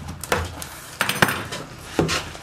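A few sharp knocks and clinks of things handled on a wooden counter: a cardboard printer box moved about and a pair of metal scissors set down, the brightest, ringing clink coming a little past the middle.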